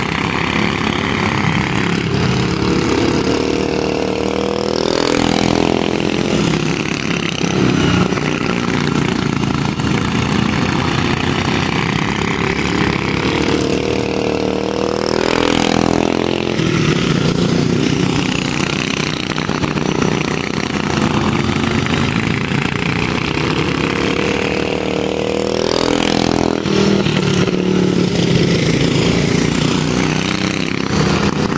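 Several racing go-karts' modified flathead engines running hard on a dirt oval. The pack passes close by about every ten seconds, the engine pitch sweeping as it goes by, with their running heard throughout.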